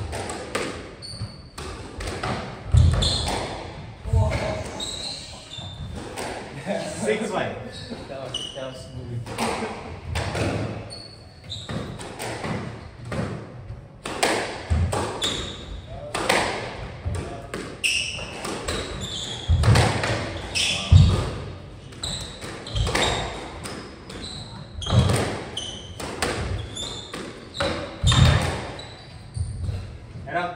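A squash rally: the ball struck again and again by the rackets and off the walls, each hit a sharp crack with a low thud, echoing around the court. Short high squeaks come in between the hits.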